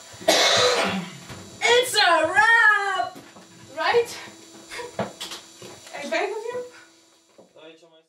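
Voices in a small room after the music has stopped: a cough-like burst, then wordless exclamations whose pitch slides up and down, and the sound fades out near the end.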